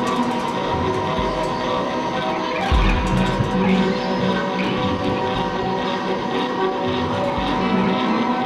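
Live music: a dense, droning wall of sustained tones, with a deep bass coming in nearly three seconds in.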